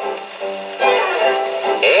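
Orchestral accompaniment from a 1946 Decca 78 rpm shellac record, played back acoustically through the soundbox of a portable wind-up gramophone: a short instrumental passage with no singing, swelling about a second in and ending on a quick upward slide.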